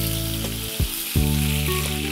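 Curry leaves sizzling in hot oil in a nonstick frying pan, a steady hiss throughout. Background music with sustained held notes plays under it, changing chord twice.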